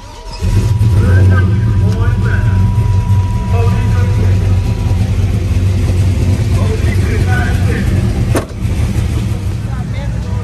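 Chevrolet pickup truck's engine starting about half a second in, catching at once and settling into a steady idle. A brief click comes near the end.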